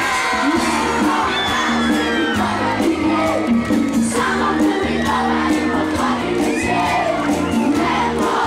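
Live pop band playing loud through a PA with a steady drum beat and bass, while a crowd cheers and shouts.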